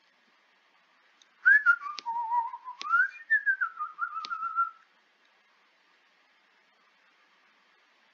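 A person whistling a short, wandering tune for about three seconds, starting about one and a half seconds in, with a few sharp clicks along the way.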